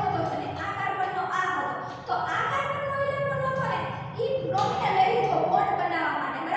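A woman speaking continuously in a lecture, with short pauses between phrases.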